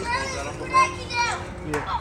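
Young boys' high-pitched voices, excited calls and chatter while they play.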